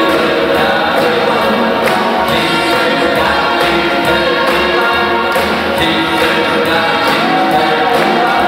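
A live big band playing swing music, horns and saxophones in full ensemble over a steady drum beat.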